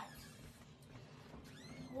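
Nearly quiet room with one faint, short, high cat meow about one and a half seconds in.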